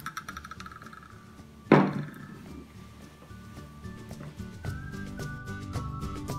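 A metal spoon knocks once, sharply, against a ceramic mug with a short ring, about two seconds in, after a light click at the start. Background music comes in about halfway through.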